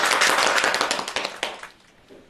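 A small group of people clapping their hands fast. The claps fade out about a second and a half in.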